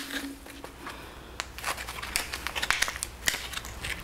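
Foil pouch of Blue Star luminol tablets crinkling and crackling in gloved hands as it is worked at to tear it open, a run of irregular sharp crinkles. The pouch is hard to open.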